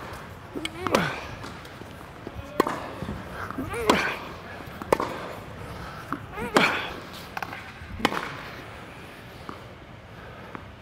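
Tennis balls struck by racquets and bouncing during a rally on an indoor hard court: sharp hits about every one to one and a half seconds, the loudest around one, four and six and a half seconds in, stopping after about eight seconds. Short squeaky pitched sounds come with some of the hits.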